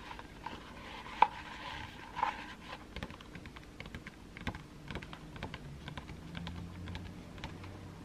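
Close-miked handling of a hardcover picture book: fingertips and nails tapping and sliding on the stiff paper pages, with light paper rustling as a page is moved. It comes as a run of small irregular clicks, the sharpest about a second in.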